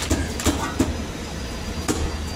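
A few irregular sharp clicks and knocks of metal parts being handled on an opened ice machine, over a steady low hum.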